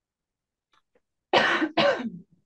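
A person coughing twice in quick succession, about a second and a half in.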